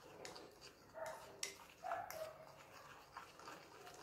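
Faint scraping and a few light clicks of a spoon stirring dry cinnamon and cocoa powder in a small bowl, with some short, faint squeaks.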